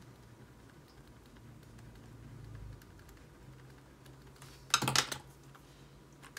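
Pen work on planner paper: faint scratches and ticks of writing, then a short cluster of sharp clicks and taps about five seconds in as a marker pen is handled and touched to the page.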